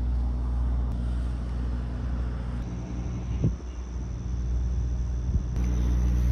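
Steady low hum of an idling truck engine, with one short knock about three and a half seconds in.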